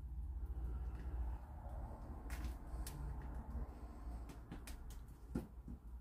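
Quiet low hum with a few faint clicks; a quick pair of clicks about two and a half seconds in is the Wurkkos HD20 torch's switch being double-clicked to jump from high to turbo.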